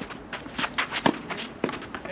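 Tennis players' footsteps on the court: a quick, irregular series of sharp taps and scuffs, the loudest about a second in.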